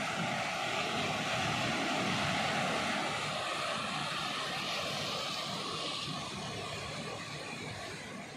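Sea surf washing up the beach: a steady rush of water that swells a little a few seconds in and then eases.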